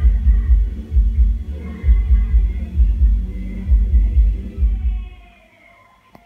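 Karaoke music from a sound system across the street, heard from inside a room, dominated by a heavy bass beat with faint singing above it. It stops about five seconds in.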